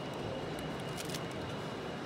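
Steady background noise of a busy hall, with a few faint small clicks about a second in and a faint thin high tone.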